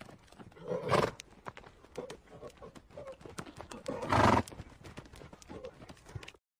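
Zebra calling: two loud, harsh, horse-like calls, one about a second in and one about four seconds in, with fainter sounds between them.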